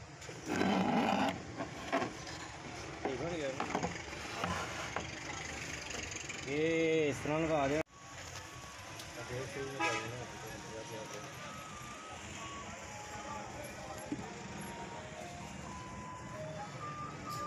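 Indistinct voices over a steady low hum.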